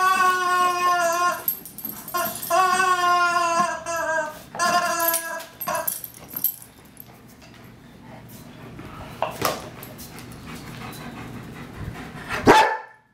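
German Shepherd dog whining: three long, high-pitched whines in the first six seconds, each falling slightly in pitch. After that it goes quieter, with a couple of soft knocks.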